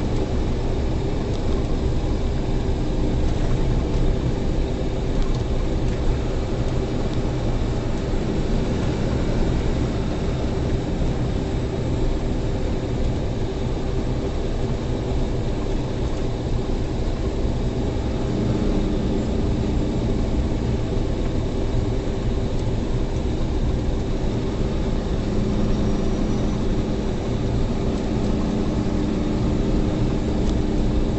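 Semi truck cruising on a snow-covered highway, heard inside the cab: a steady low drone of the engine and tyres. A hum in the engine note shifts partway through.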